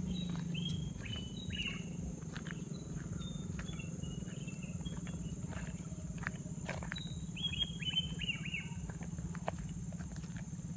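Birds chirping: runs of short, high, falling notes, one run near the start and a louder one about seven to eight and a half seconds in, over a steady low rumble.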